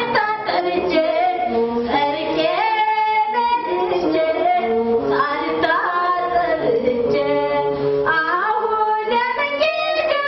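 A woman's voice singing a slow melody unaccompanied, holding long notes and sliding between them.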